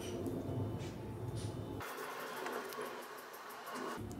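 Faint outdoor background noise with a steady low hum. About two seconds in, it changes abruptly to a thin, even hiss with no low end, as at an edit cut.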